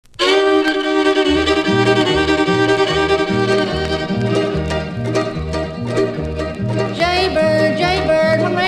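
Instrumental intro of a bluegrass song: a fiddle plays the melody from the first moment, and a steady two-note bass line comes in about a second later. No singing yet.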